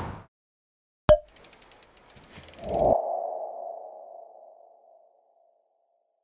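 Logo sting sound effects: a sharp click about a second in, a quick run of ticks, then a swell that ends in a single ringing tone fading away over about two seconds.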